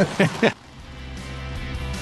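Laughter for the first half second, cut off suddenly; then background music fades in, growing steadily louder.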